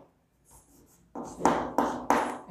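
Chalk writing on a chalkboard: after a brief pause, a few short chalk strokes begin about a second in.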